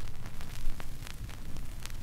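Vinyl record surface noise in the lead-in groove: steady hiss and low rumble with scattered clicks and pops.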